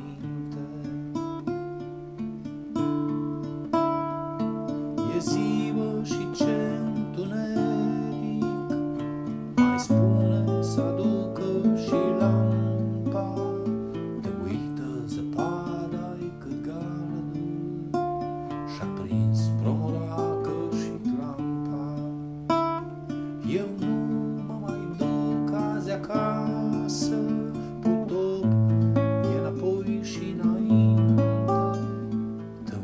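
Acoustic guitar playing an instrumental passage of a folk song, with strummed chords.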